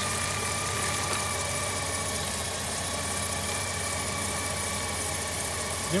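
A Jeep Liberty's 3.7-litre V6 idling steadily with a freshly replaced PCV valve, with a faint steady whine above the engine note.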